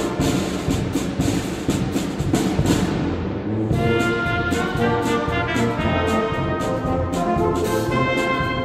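A small wind band of brass, saxophone and clarinet with a drum kit playing a piece, the held chords carried over a steady drum beat.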